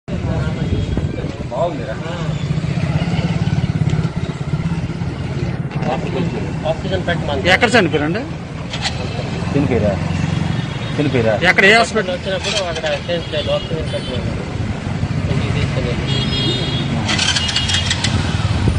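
Motorcycle engine running steadily, a low even hum, with people's voices talking over it; the voices grow louder twice, about seven and eleven seconds in.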